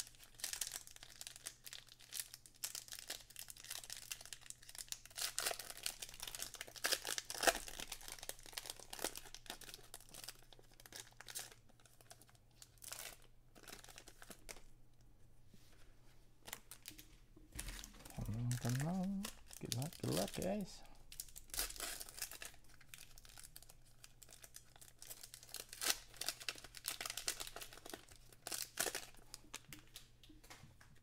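Foil trading-card pack wrappers crinkling and tearing as packs are ripped open, with cards being handled in between. The crackling comes in bursts, heaviest early on and again near the end.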